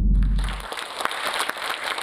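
A deep low boom dies away in the first half second while applause rises and then keeps going.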